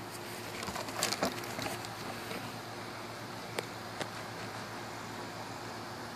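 A puppy playing with a rubber balloon: a quick flurry of taps and rubbing about a second in, then two single sharp clicks a few seconds later, over a steady low hum.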